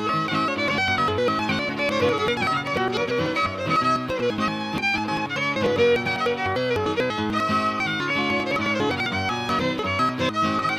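Old-time fiddle tune played on fiddle with guitar accompaniment: the fiddle carries a busy, continuous melody over strummed guitar, without a break.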